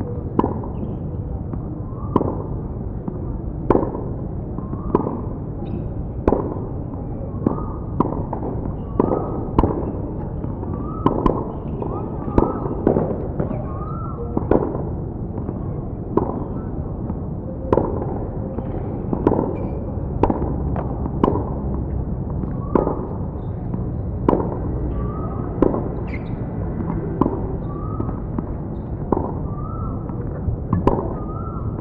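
Tennis rackets striking balls in a steady back-and-forth hitting session, a sharp pop about every second, typical of pre-match warm-up hitting. A steady low hum runs underneath.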